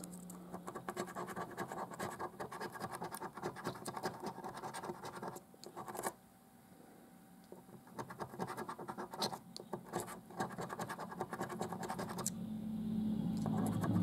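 A coin scraping the silver latex coating off a lottery scratch card in quick, rapid strokes. The scratching stops for a couple of seconds about halfway through, then starts again.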